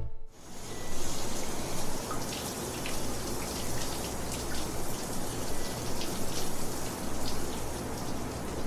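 A dwarf hamster eating seeds from a small ceramic bowl: many small, irregular crunching clicks over a steady background hiss and low hum.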